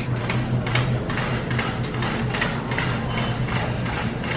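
Metal shopping cart rattling as it is rolled along a hard store floor: a dense run of small clicks and clatter over a steady low hum.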